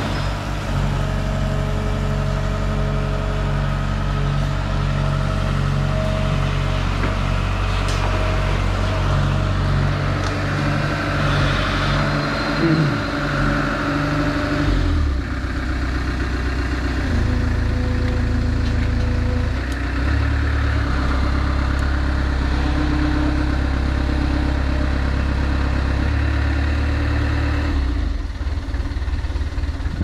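Diesel engine of a long-reach Sumitomo excavator on a pontoon barge running steadily. Its note shifts about halfway through, then the drone drops away near the end.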